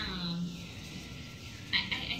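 A woman's voice holding a drawn-out hesitation sound at the start, then a few short hissy mouth sounds near the end.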